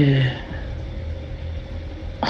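A woman's voice briefly at the start, then a steady low rumble with a faint steady hum underneath.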